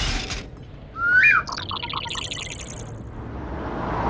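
A short hiss, then a rising whistle and a quick run of high, bird-like chirps about a second and a half in.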